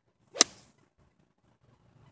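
Golf iron striking a ball during a full swing: one sharp, crisp click about half a second in, with a brief tail.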